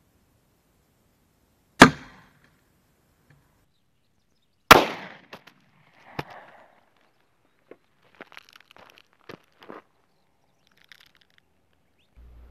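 Two shots from a Taurus 856 .38 Special revolver, about three seconds apart, each a sharp crack with a brief ringing tail. A smaller click follows about six seconds in, then faint scattered clicks and rustles.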